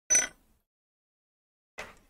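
A short clink of a metal crochet hook being set down on a wooden tabletop just after the start. A softer, brief handling sound follows near the end.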